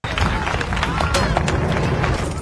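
Episode soundtrack of an arena crowd clamouring and shouting, with a low rumble underneath and scattered sharp knocks.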